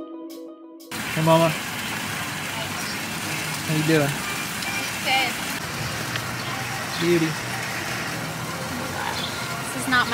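Music fades out in the first second, then a steady outdoor hiss follows, with a few brief snatches of voices in the background.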